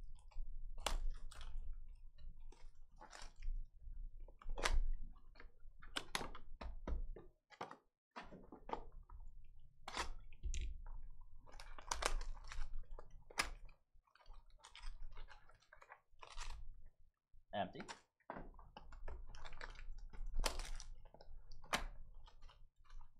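Plastic shrink wrap crinkling and tearing as it is pulled off a trading-card hobby box, in irregular crackles. Near the end, the cardboard box and the foil card packs are handled.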